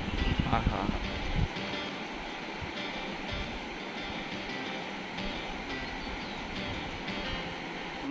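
A fast, shallow mountain river rushing over stones, a steady even rush of water. Gusts of wind buffet the microphone during the first second and a half.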